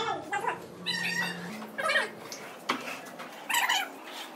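Animal calls: several short, high, wavering cries about a second in, around two seconds and again near the end, over a low steady hum that steps up in pitch.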